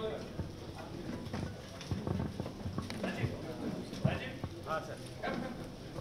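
Handling noise from a handheld wireless microphone: scattered light knocks and clicks, about one a second, over faint voices in the room.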